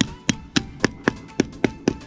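Hammer tapping in a nail, quick strikes about four a second.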